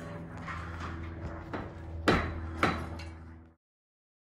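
Adjustable steel floor props knocking and clanking as they are set in place: three sharp knocks, the second the loudest, over a steady low hum, all cutting off suddenly near the end.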